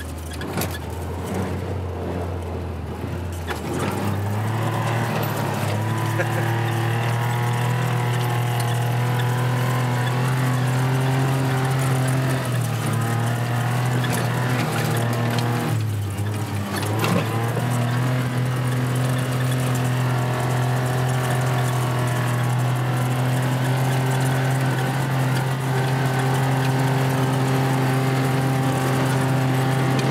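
Gator utility vehicle's engine running while driving across a field. The engine pitch rises about four seconds in as it speeds up, dips briefly about halfway through, then holds steady.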